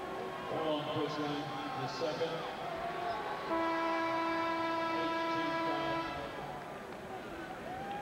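Basketball arena horn sounds one steady note for about two and a half seconds, starting about three and a half seconds in, over crowd noise.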